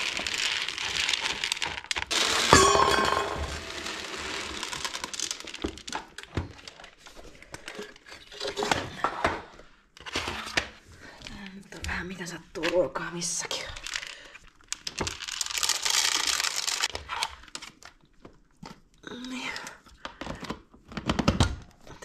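Dry cat kibble rattling in a plastic automatic cat feeder's hopper as it is tipped and poured, with a sharp knock about two and a half seconds in. This is followed by scattered rustling and knocks of the feeders being handled.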